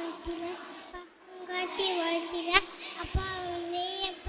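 A young child singing into a handheld microphone in long, held notes, with a short break about a second in. A few soft bumps from the microphone are heard as it is held to the child's mouth.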